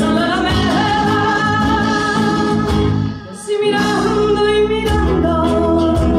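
Live band music: a woman singing long, wavering held notes over nylon-string guitar and drums. The band drops away briefly about three seconds in, then comes back in.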